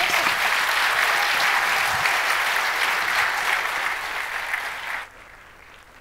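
Audience applauding steadily, cut off abruptly about five seconds in.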